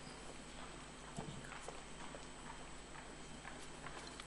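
Faint, irregular footsteps tapping on a stage floor, over quiet hall room tone.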